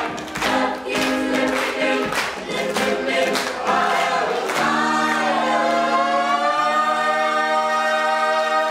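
Choir of teenage singers singing an up-tempo song over a steady beat, then holding one long chord from about halfway through.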